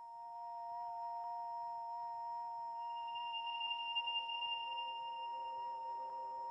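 Ambient background music of sustained, ringing tones like a singing bowl. It fades in from silence, and a higher tone joins about halfway through.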